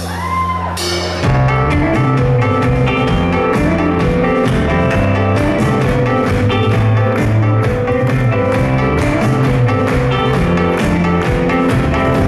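A live rock band playing an instrumental passage: acoustic guitar, keyboard and bass over a drum kit. A held chord gives way about a second in to the full band coming in with a steady drum beat.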